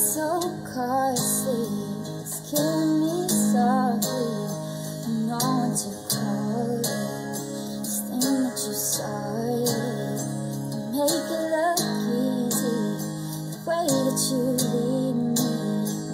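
A woman singing a melody over her own strummed guitar.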